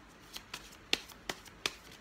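Tarot deck shuffled in the hands, a run of crisp card snaps about three a second.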